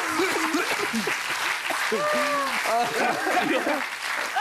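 Studio audience applauding, a steady patter of clapping with people's voices rising over it.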